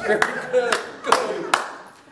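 A few sharp hand claps, about five in two seconds and unevenly spaced, with brief bits of voice between them.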